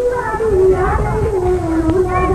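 A person's voice held in a long, slowly wavering, sing-song tone, over the low rumble of a car cabin.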